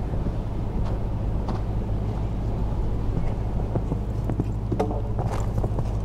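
A steady low rumble with a faint hum, over which a horse cantering on arena sand gives a few scattered, soft hoof thuds, most of them in the second half.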